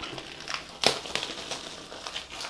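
Thin plastic shrink-wrap crinkling as it is torn and pulled off a cardboard phone box, with one sharp crackle a little under a second in.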